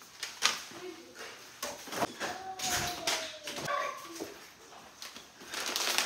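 A dog whining: one thin, slowly falling whine a little over two seconds in, with a short higher note after it. Scattered clicks and rustles of food packets being handled.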